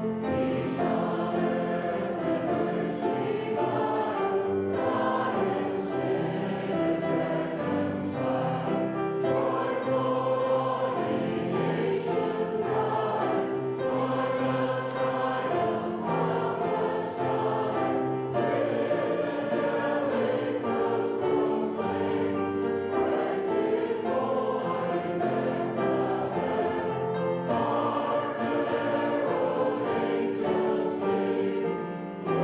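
A choir singing a hymn: many voices holding sustained notes together in a continuous sung passage.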